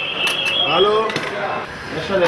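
Indistinct voices talking over steady room noise, with a few light clicks.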